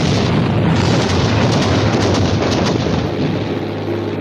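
Cartoon explosion sound effect: a long, dense rumbling blast that holds and eases off slightly near the end.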